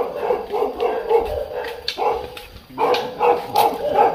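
A dog barking repeatedly in quick runs of barks, with short pauses between the runs.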